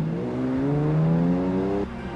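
Lamborghini Diablo's V12 engine accelerating hard, its note climbing steadily in pitch, cut off abruptly near the end.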